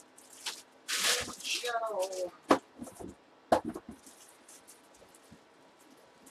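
Rustling of plastic packaging as items are handled, then two sharp knocks about a second apart.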